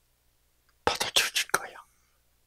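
A man's voice saying a short phrase in a whisper about a second in, between pauses.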